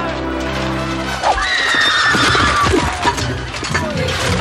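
Film score of sustained low chords, cut into about a second in by sudden battle clatter and a horse whinnying for about a second and a half.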